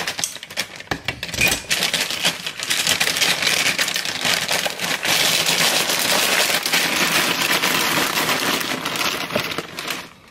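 A clear plastic bag of vanilla wafer cookies crinkling and crackling as a hand rummages inside it to pull out wafers. The crinkling grows louder about halfway through and stops abruptly near the end.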